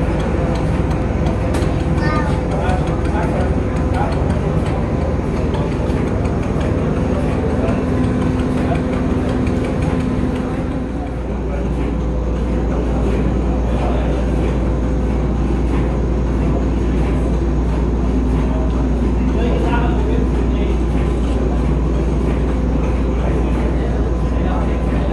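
People talking in the background over a steady low rumble with a constant machine-like hum; the rumble gets heavier about halfway through.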